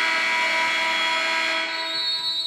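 Gym scoreboard buzzer sounding one long, steady electric blast that marks the end of the game.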